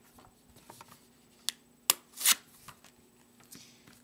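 Hands handling Pokémon trading cards and a card sleeve: two sharp snaps about halfway through, then a short sliding swish, like a card being slipped into a sleeve.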